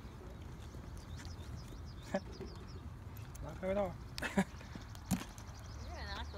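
Outdoor ambience with a low wind rumble on the microphone, faint voices in the background and a few sharp handling clicks.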